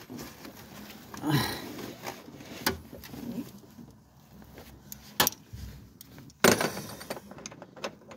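Scattered clicks and knocks of hands and tools working among the hoses and wiring of a car's engine bay, with the loudest knock about six and a half seconds in.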